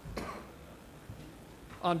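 A person clearing their throat once, briefly, then a man starts to speak near the end.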